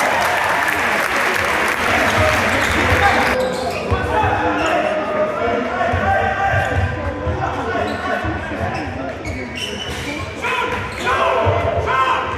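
Basketball being dribbled on a sports hall floor during play, repeated low thumps under spectators' voices in the large hall. A loud wash of crowd noise fills the first three seconds or so, and voices rise again near the end.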